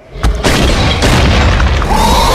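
A loud boom sound effect that hits suddenly about a quarter second in and carries on as a sustained heavy rumble, with a pitched growl coming in near the end.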